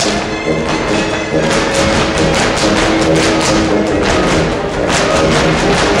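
Mexican folk dance music with the dancers' zapateado footwork over it: fast, dense stamping of shoes on a wooden floor, thickest from about a second and a half in to about four and a half seconds, then picking up again near the end.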